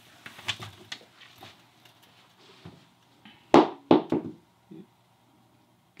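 Light scattered taps and clicks, then a quick run of three or four loud knocks about three and a half seconds in, from a metal snake hook and the snake knocking against a glass-fronted enclosure as the snake is lifted out.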